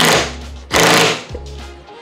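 Cordless impact wrench hammering in two short bursts, one at once and one just under a second in, as it runs the strut's main top nut down snug on the camber/caster plate.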